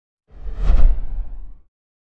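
Logo-sting sound effect: a single whoosh with a deep boom beneath it. It swells quickly, peaks, and dies away after just over a second.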